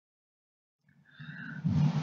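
Complete silence for about the first second. Then faint noise and breathing at the narrator's microphone come in, growing louder just before speech resumes.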